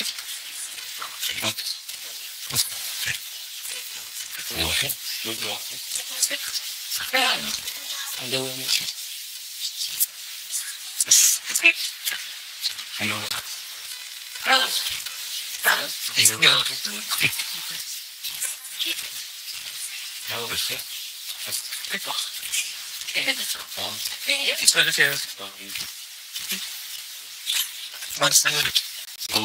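Hybrid direct radio voice output from a MiniBox Plus FM radio scanner fed through a Zero-Gain Stall device: a steady high hiss of radio static broken every second or two by short, chopped fragments of voices. It runs through an expander, which makes the voice snippets stand out from the noise floor without making them more intelligible.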